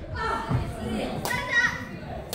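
High-pitched voices calling out and chattering in a large, echoing gymnasium, twice: briefly at the start and again for about half a second just after the middle.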